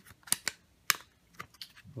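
Smartphone being pressed into a hard plastic snap-in case shell: a few sharp plastic clicks and taps, the loudest a little under a second in, with fainter taps after.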